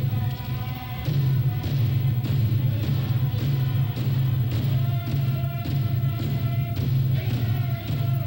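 Iñupiaq drum-dance song: a group of voices singing held, shifting notes over a steady beat of frame drums, heard through an old cassette tape recording.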